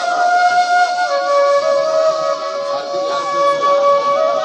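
Bansuri flute playing long, held notes of a slow devotional melody, with keyboard accompaniment, the pitch stepping from note to note.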